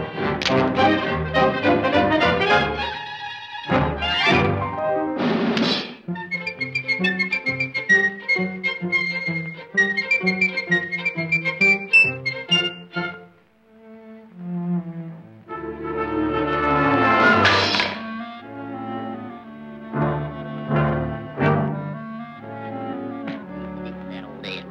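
Orchestral cartoon score with brass and strings, punctuated by sharp percussive hits and two sweeping flourishes. The music thins out to a brief near-hush a little past the middle, then builds again.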